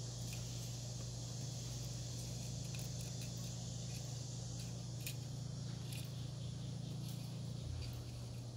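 Quiet, steady low hum under an even high hiss, with a few faint small clicks as the thin wires of a torch tip cleaner set are handled.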